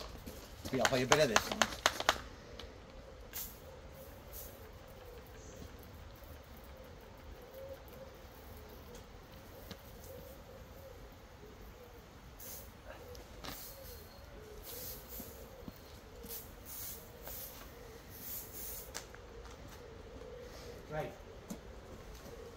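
Hand trigger spray bottle squirting onto a road sign: a run of a dozen or so short hisses in quick succession, starting a little past halfway. A brief louder burst comes about a second in.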